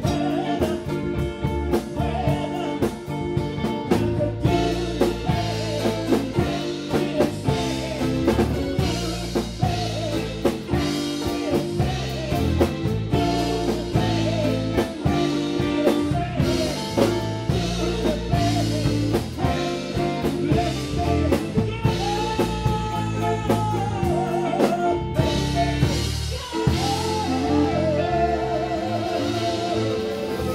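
Live band playing: electric guitar and keyboard over a steady drum beat, with a man singing in stretches.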